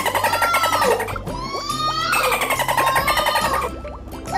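Bottlenose dolphin sounds: rapid click trains with two long arching whistles, the second starting about halfway through. Background music plays underneath.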